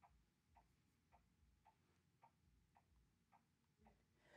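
Near silence, with a very faint regular ticking, a little under two ticks a second.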